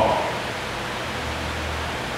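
Steady hiss with a low hum underneath: background noise of the room and the microphone line between a man's sentences.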